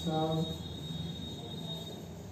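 A man's brief hummed syllable near the start, with a thin, steady high-pitched whine throughout, as chalk writes on a blackboard.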